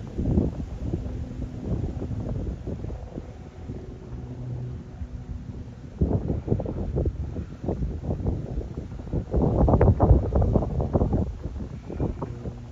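Wind buffeting the microphone in uneven gusts, strongest about ten seconds in, over a faint low steady drone from the passing vessels' engines.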